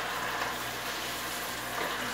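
Steady, quiet sizzle of greens (trapoeraba and spinach) sautéing in lard in a pan.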